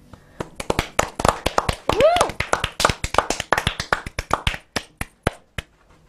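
A few people clapping after a song, with one voice whooping about two seconds in; the claps thin out and stop near the end.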